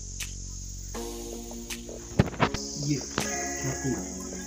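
A steady high-pitched insect sound, typical of crickets, with music playing from about a second in and a few sharp knocks in the middle.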